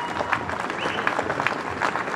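Crowd applauding: many scattered claps, with a few voices calling out.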